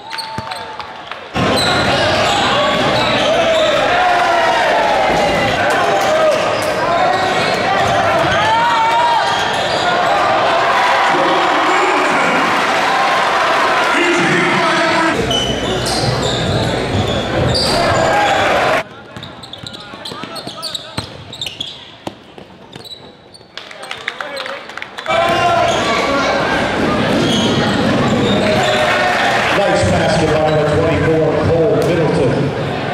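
Basketball game sound in a gym: the ball bouncing on the court among indistinct shouting voices of players and spectators, echoing in the hall. The level jumps abruptly where game clips are cut together, with a quieter stretch of scattered knocks a little past the middle.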